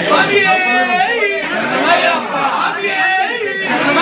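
Several people's voices at once, overlapping and loud, from a group gathered at the pooja.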